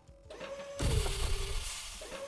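Sci-fi metal blast-door transition sound effect: a mechanical whirring hum builds, a heavy metallic slam comes about a second in, and the hum then carries on and slowly fades.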